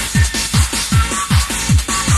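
Techno music with a fast, steady kick drum, each kick dropping sharply in pitch, at about two and a half beats a second, with short high synth notes between the beats.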